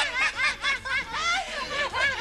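Several people laughing together, overlapping short high-pitched bursts of laughter.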